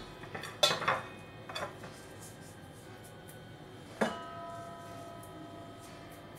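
Kitchenware being handled on a counter: a few light knocks in the first two seconds, then a single clink about four seconds in that rings on in a bell-like tone as it fades.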